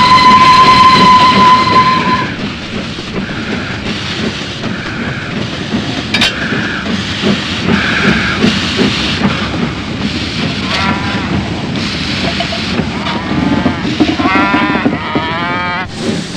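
Steam locomotive whistle blowing one steady tone for about two seconds. It then gives way to the rumble of the running locomotive, with intermittent bursts of steam.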